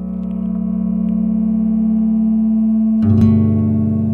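Background film-score music: a sustained drone of held tones that slowly grows louder, joined by a deeper note and a fuller texture about three seconds in.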